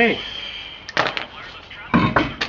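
Metal clinks and knocks during wheel removal. A quick cluster of sharp clinks about a second in comes from steel lug nuts knocked together in the hand. A heavier knock near the end comes as the steel-rimmed wheel is gripped and shifted on its hub studs.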